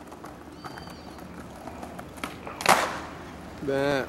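Skateboard wheels rolling over stone paving tiles with faint clicks at the tile joints, then one short, loud clack of the board about two-thirds of the way through as a flatground trick is tried.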